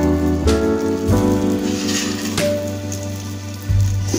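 Sizzling of a round of tel pitha batter deep-frying in hot oil, a steady hiss under instrumental background music whose sustained notes change about every half second.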